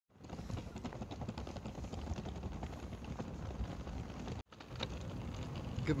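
Hard-shell wheeled suitcase rolling over brick block paving: a rapid, continuous clatter of the small wheels knocking over the joints between the bricks, with a brief break about four seconds in.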